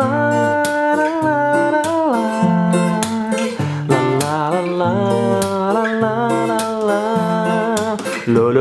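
Ibanez PF15ECE electro-acoustic guitar playing a melodic phrase of a guitar solo over a D minor chord, single notes with slides and pitch glides between them.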